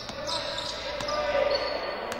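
Live sound of a basketball practice in an echoing gym: a basketball bouncing on the court, with two sharp knocks, and players' voices in the background.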